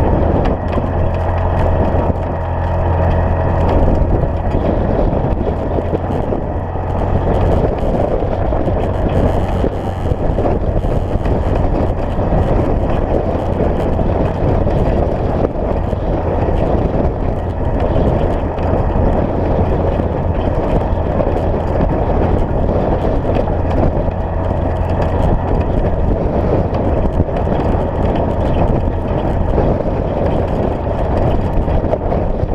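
Side-by-side UTV engine running with a steady low drone while driving up a rocky dirt trail, with constant rumble from the tyres and chassis over the stones.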